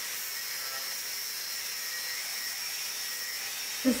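Angle grinder running against steel held in a vise, a steady high-pitched whine with a grinding hiss and no change in level.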